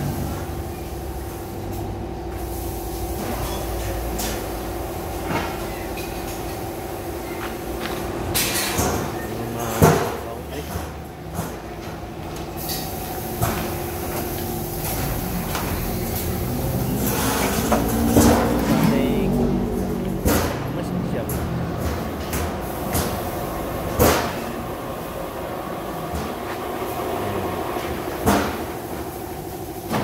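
Metal-fabrication shop running: a steady hum of machinery with scattered sharp metal clanks and knocks, about half a dozen across the stretch.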